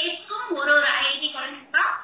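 A woman talking over a video-call connection, the sound thin and cut off at the top like a call's audio.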